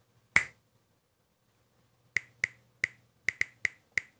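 Finger snaps: one sharp snap, then after a pause of about a second and a half a quick, uneven run of about seven more.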